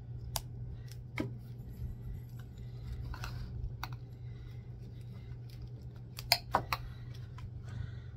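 Metal spoon clinking and scraping against the inside of a tin can while stirring a thick paste of cornstarch, acrylic paint and glue, with scattered clicks and a cluster of sharper clinks about six and a half seconds in. A steady low hum runs underneath.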